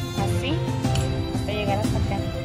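Background music with a sung vocal melody over steady instrumental accompaniment.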